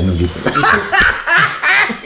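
Two men laughing together.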